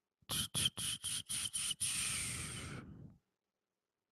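A person's breath puffing into a handheld microphone held at the mouth: six short puffs, about four a second, then one longer exhale that fades out about three seconds in.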